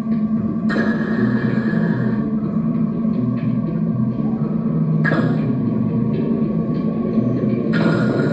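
Improvised experimental drone music played through effects and a guitar amplifier: a steady low drone with a held higher tone. Noisy, hissing swells come in about a second in, again around five seconds, and near the end.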